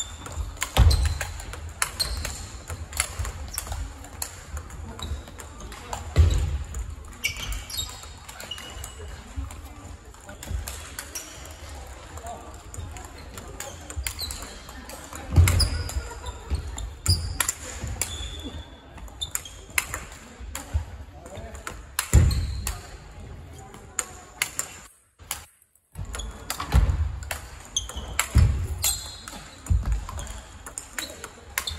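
Large-ball table tennis play: sharp irregular clicks of the celluloid/plastic ball off rackets and tables, from this table and others around it in a big hall, with several heavy thuds of feet on the wooden floor, over a murmur of voices.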